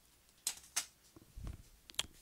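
A few faint, short rustling strokes and a soft low thud, the handling sounds of a person moving at a whiteboard between spoken lines.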